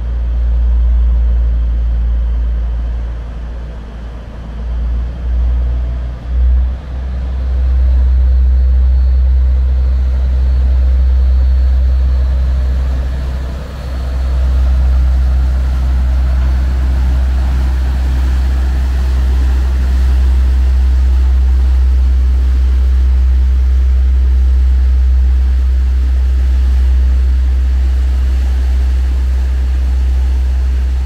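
Diesel engine of a loaded river cargo barge running under power as it pulls out of a lock, a deep steady drone, with its propeller wash churning the water and growing louder from about halfway.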